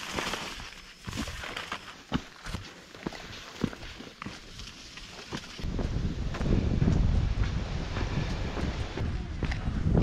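Footsteps on a dirt hiking trail, a step every half second or so; about halfway through, a low rumble on the microphone comes in and stays.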